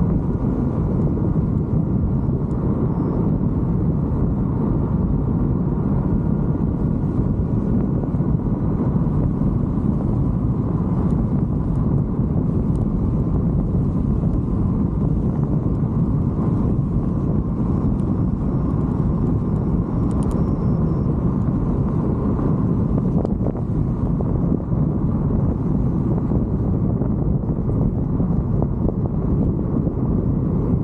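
Steady wind rushing over the camera microphone while riding a bicycle, mixed with tyre noise on rough, cracked asphalt, with a faint steady whine underneath.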